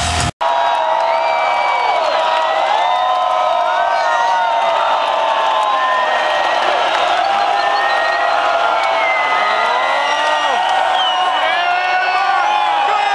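Large stadium crowd cheering, whooping and shouting, many voices gliding up and down at once. A heavy-metal band's guitar and drums cut off abruptly a moment in, just before the cheering.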